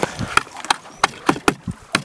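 A hammer knocking ice off a frozen outboard motor: a quick series of sharp knocks, about three to four a second.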